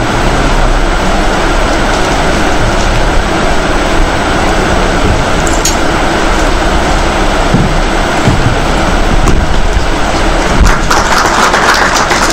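An audience applauding steadily, a little louder near the end.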